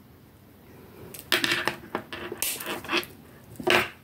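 Metal jewellery tools and steel choker wire being handled: irregular clinks, rubs and clicks, starting about a second in and running on for a couple of seconds.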